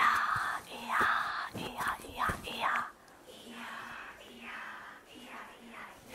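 Whispered chanting by a woman and a group, hushed and rhythmic, louder in the first half and fainter after about three seconds.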